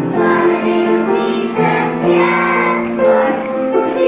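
A group of young children singing a song together in unison, holding long notes.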